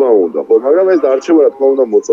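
Speech only: a man talking over a remote video link.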